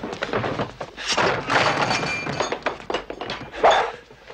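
Scuffle of a fistfight: repeated thuds and knocks of bodies and objects hitting one another, the loudest one near the end.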